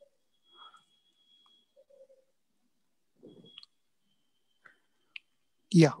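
Quiet room tone over a video call, broken by a few faint small clicks and soft short sounds, with a faint thin high whine at times. A voice says 'yeah' right at the end.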